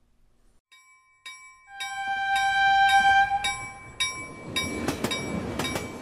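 Train air horn sounding a chord of several held tones, followed by the rumble of a moving train with rhythmic clacks of wheels over rail joints.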